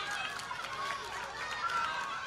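Faint outdoor sound of a youth football match: distant voices calling out over a low background hiss.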